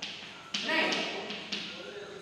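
Chalk tapping and scraping on a blackboard as a word is written, with a few sharp taps as the strokes and full stop land.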